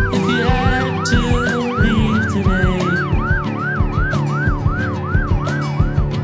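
Emergency vehicle siren in a fast yelp, each wail rising and falling about three times a second, over background music with a steady beat. The siren stops shortly before the end.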